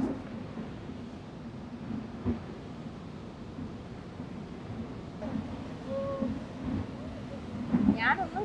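Steady low rumble on a tour boat under the Rhine Falls: the boat's motor and the roar of the falling and churning water.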